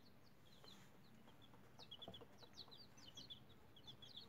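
Chicks in a brooder peeping faintly: many short, high, downward-sliding peeps in quick succession, busier in the second half.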